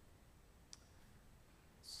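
Near silence with a single faint, short click under a second in; a woman's voice begins at the very end.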